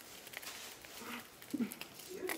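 Faint, light clicks from small metal jewellery (rings on silver necklace chains) being handled in the hands, with a short murmur about a second in.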